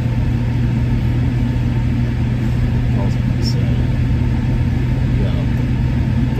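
Steady low hum of engine and road noise heard from inside a moving car's cabin.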